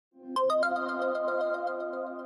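Short electronic news intro jingle: three quick rising chime-like notes, then a held chord that slowly fades.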